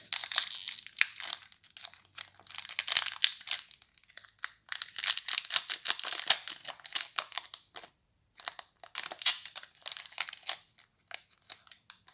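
Foil trading-card booster pack wrapper being torn open and crinkled by hand: a run of crackling rustles in irregular bursts, with a short pause about eight seconds in.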